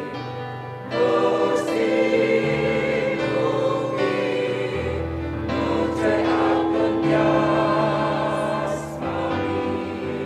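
A mixed church choir singing a hymn over held bass notes that change every two to three seconds. The voices swell about a second in.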